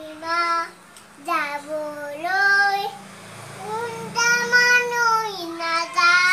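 A young child singing: several short phrases whose notes slide up and down, then one long held note in the second half.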